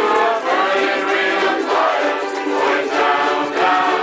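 A large group strumming ukuleles together, with many voices singing along as a crowd.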